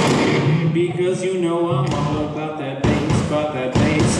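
Live rock band in a thinned-out section of the song: a male voice sings or calls out into the microphone over sparse guitar and drums, with two sharp drum hits in the second half.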